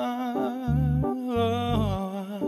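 A male singer hums a wordless, gliding melody line over electric keyboard chords with low bass notes sounding every half second or so.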